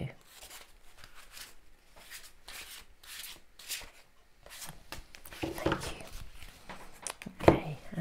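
A deck of cards shuffled by hand: soft, repeated swishes and light clicks of cards sliding against each other. Near the end a sharp tap stands out as cards are set down on the table.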